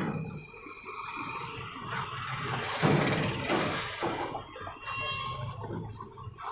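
Street traffic noise from outside, swelling to its loudest about three seconds in and then easing off.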